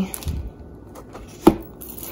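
Handling of an old hardcover book on a stone countertop: faint rustle and one sharp knock about one and a half seconds in, as the book is moved to be opened.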